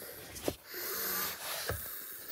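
A person's breathy, wheezy exhale close to the microphone, with two short knocks of the phone being handled, about half a second in and near the end.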